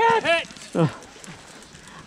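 A man crying out in pain: two quick, high cries that rise and fall at the start, and a third, falling cry just under a second in, from a player with a torn hamstring.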